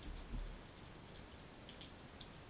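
Light rain with scattered faint drips and patters, plus a couple of low dull thumps in the first half second.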